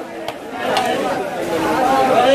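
Voices of several people chattering, with two or three short clicks in the first second.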